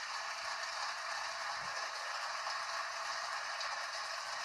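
Studio audience applauding with steady, even clapping, played through a television's speaker.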